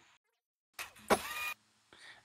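Near silence, then a short noise a little under a second in and a man's drawn-out spoken "and".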